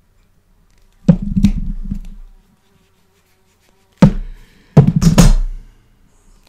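A plier-type leather hole punch working through a small leather tab and being handled on the bench: three heavy knocks, one about a second in and two close together near the end, each dying away over about a second.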